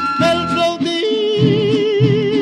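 Vintage recording of a Mexican huapango sung by a vocal trio with guitars. A high held note ends about half a second in, and from about a second in a lower note with strong vibrato is held over strummed guitar rhythm.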